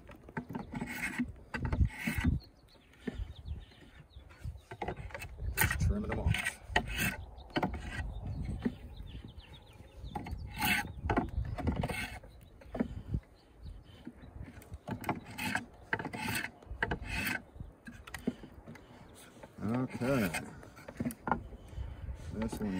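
Draw knife shaving a black locust peg blank clamped in a shave horse: a series of short scraping strokes of the steel blade across the hardwood, about one every half second to a second, with brief pauses between them.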